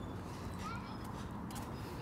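Low, steady outdoor background rumble with a faint short chirp-like sound about two-thirds of a second in.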